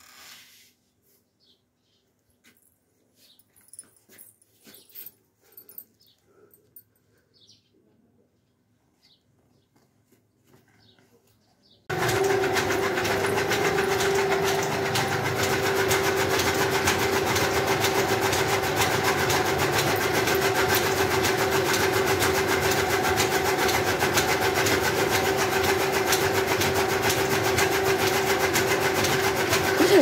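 Mostly quiet with a few faint clicks at first. About twelve seconds in, a loud, steady machine noise with a constant hum starts suddenly and keeps going without change.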